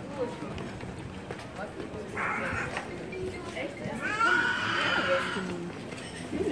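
Passers-by talking in a narrow stone lane, with a brief hiss about two seconds in. About four seconds in comes a loud, high-pitched, wavering cry from a person's voice, lasting over a second.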